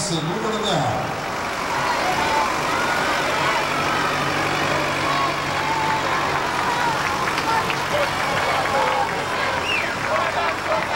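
Engine of a truck-built carnival float running steadily as the float rolls close past, under a constant noise of street crowd chatter.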